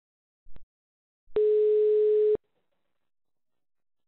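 A faint click, then one steady telephone ringback tone about a second long: the called phone ringing at the far end of an intercepted call.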